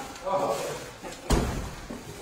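A single sharp thump or slam about a second and a half in, heavy and low, like something solid knocking or a door shutting.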